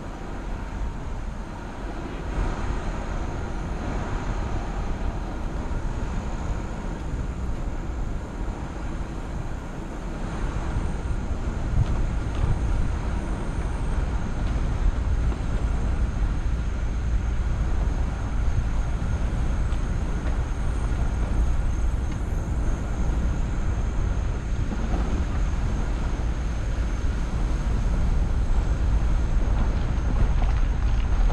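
A vehicle driving over a grassy field track: a steady low rumble from the engine and running gear that grows louder and heavier about ten seconds in, with a faint high whine throughout.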